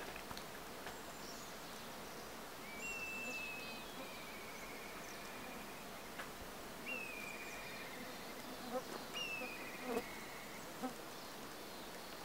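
Faint steady hum of honeybees working around the hives. A bird sings the same short phrase three times over it, each a high whistle running into a lower trill.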